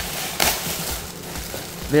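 Silver metallic-foil gift wrap crinkling and rustling as it is torn open by hand. The loudest burst of crackling comes about half a second in.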